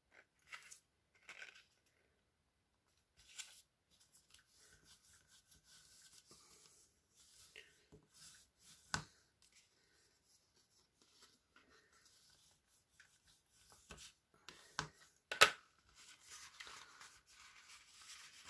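Black cardstock being handled and pressed into place: faint paper rustling and sliding, with a few sharp taps, the loudest about fifteen seconds in.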